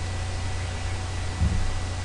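Steady hiss with a low hum underneath: the background noise of a desk microphone picking up the computer and the room, with a brief faint low thump about one and a half seconds in.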